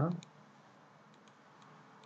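A few faint computer mouse clicks against quiet room tone, as a menu item is clicked.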